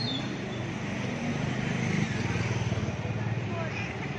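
A motorcycle engine passing close by, loudest about two seconds in, over the chatter of a queuing crowd and street traffic noise.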